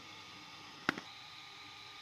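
A single sharp click about a second in, with a smaller click just after, over a faint steady hiss.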